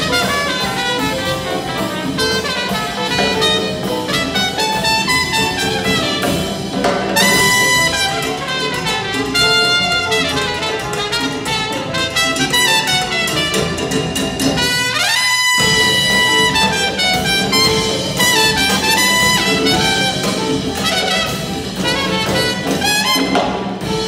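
Student jazz big band playing: trumpets, trombones and saxophones over congas, drum kit and piano. About fifteen seconds in, a quick rising glide leads into a held brass chord.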